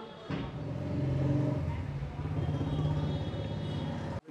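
A motor vehicle engine running close by, a low steady drone that comes in suddenly about a third of a second in.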